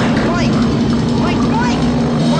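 A loud steady droning hum with a dense rushing noise over it, with a few faint short sliding tones.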